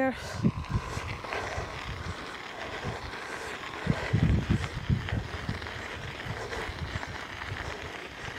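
Riding a bicycle along a gravel path: steady tyre noise with wind buffeting the microphone in irregular low gusts, strongest about four seconds in.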